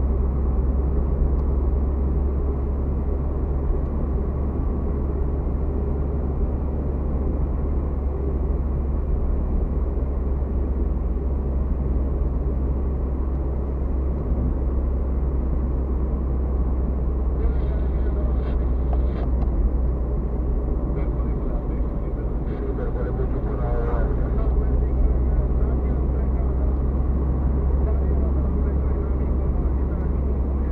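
Steady low rumble of a car's road and engine noise, heard from inside the moving car's cabin. Faint, brief higher-pitched sounds come through over it about halfway in.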